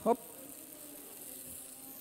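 Razor clams searing in hot olive oil in a frying pan: a low, steady sizzle as the shells open in the heat.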